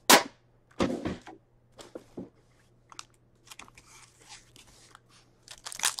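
A metal card tin being opened: a sharp clack as the lid comes off, another knock about a second later, then quieter rustling and small clicks as the foil card packs inside are handled, with crinkling near the end.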